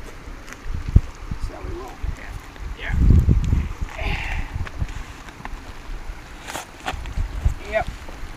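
Wind gusting on the microphone as a low rumble that rises and falls, strongest a few seconds in, with one sharp click about a second in.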